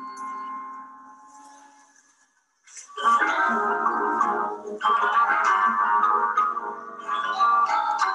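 Recorded performance of Balinese gamelan mallet percussion and gongs mixed with trumpets, trombones and keyboard. A held chord fades away to a brief silence about two and a half seconds in, then the full ensemble comes back in loud.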